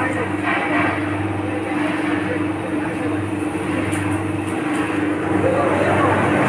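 Fryums roaster machine running: a steady motor hum that does not change.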